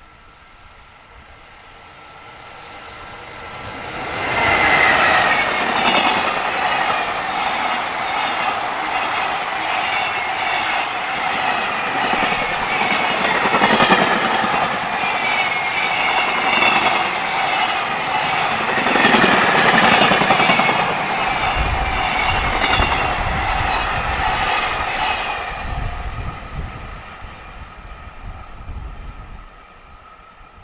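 Freight train passing close by. The electric locomotive comes past about four seconds in, followed by a long string of container flatcars with rhythmic wheel clatter over the rail joints. The sound dies away over the last few seconds.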